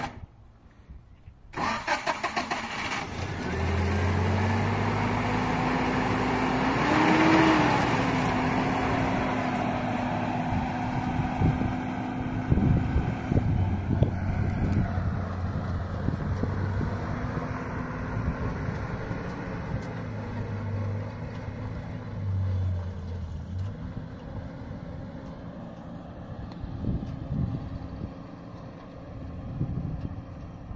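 Zamyad 24 pickup truck's petrol engine starting up about a second and a half in, revving briefly, then running steadily as the truck drives off over a rocky dirt track, with a few knocks along the way. The engine grows fainter as the truck moves away.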